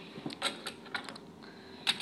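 A few light, irregular plastic clicks and taps, Lego pieces being handled and set on a wooden table.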